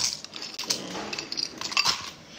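Metal spoon scooping ice cubes from a bowl and dropping them into a plastic cup: a run of light clinks and clatters, with a couple of louder knocks.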